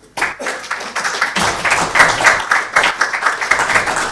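Audience applauding: many hands clapping together, starting suddenly and holding steady.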